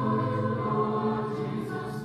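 A choir singing slowly in long, held notes, with the pitch moving to a new note near the end.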